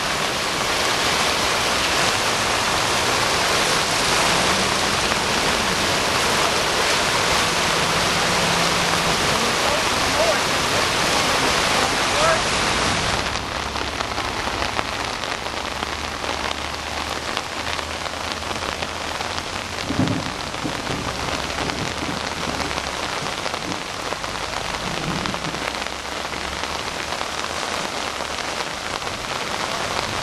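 Heavy rain and rushing floodwater as one steady hiss, which drops in loudness and turns duller about halfway through.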